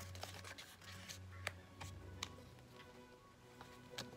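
Hand paper crimper pressing the edge of a paper wrapper: faint, irregular clicks and paper rustling. Faint background music runs underneath.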